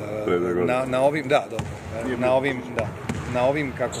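A man talking in a large, echoing sports hall, with a few sharp knocks of a basketball bouncing on the court in the background.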